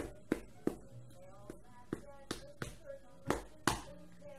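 A quick, irregular series of about ten sharp slaps and thumps as a cat bats its paws at a plush toy tiger.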